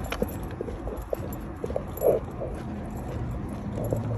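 Footsteps on a concrete sidewalk with low rumble of wind and handling on a phone microphone, and a brief louder sound about halfway through.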